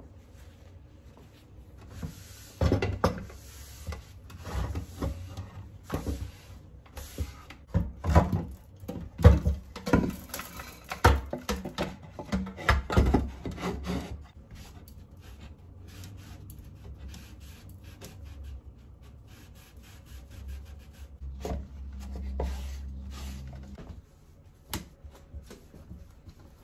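A wooden bird feeder with wire mesh screens being handled and scrubbed in a stainless steel sink: irregular rubbing and scraping with knocks of wood and wire against the sink, loudest in the first half and quieter after about fourteen seconds.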